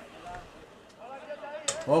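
Faint voices in the background, quiet and indistinct. Near the end a short click, then a man's voice starts speaking loudly.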